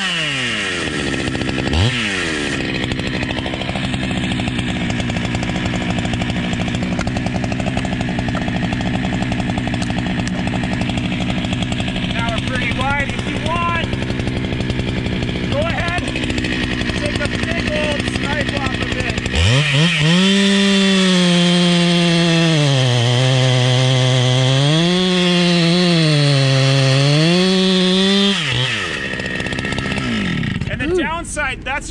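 Two-stroke chainsaw sawing into a Douglas fir trunk. A steady engine drone fills the first two-thirds. Then the saw runs louder at full throttle, its pitch dipping and recovering as the chain bogs and clears in the cut, and it revs down near the end.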